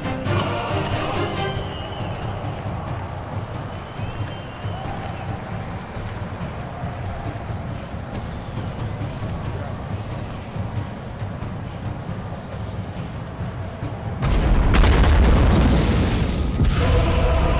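Action-film soundtrack: a background score over a low rumble, then a sudden loud boom about fourteen seconds in that lasts a couple of seconds.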